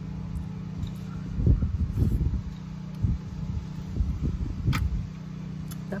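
Wind buffeting the microphone in irregular low rumbling gusts over a steady low hum, with a sharp click about three-quarters of the way through.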